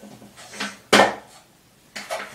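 Close rustling of hair being gathered and handled, with a sharp knock about a second in.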